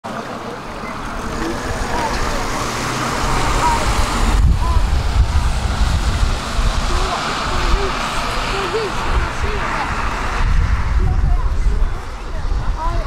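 Street traffic on a wet road: tyre hiss and low engine rumble of passing vehicles, swelling after a few seconds, with scattered voices of passers-by.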